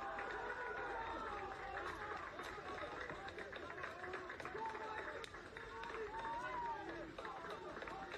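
Footballers shouting and cheering on the pitch, several voices overlapping, celebrating a goal just scored.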